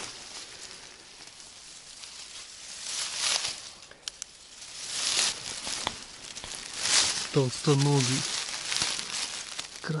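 Dry grass and fallen leaves rustling and crackling as the mushroom picker pushes through and crouches at ground level. The noise comes in bursts about three, five and seven seconds in.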